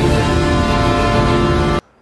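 Background music with sustained chords, cutting off suddenly near the end.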